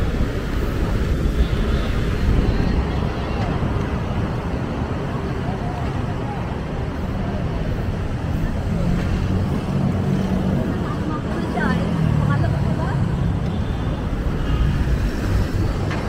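City street ambience beside a busy road: steady traffic noise, with passersby talking faintly around the middle.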